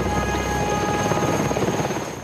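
Helicopter rotor chopping rapidly and steadily.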